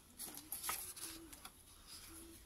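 Quiet rustling of paper with a few light clicks and taps as a sheet of guest-check paper and a small plastic glue bottle are handled.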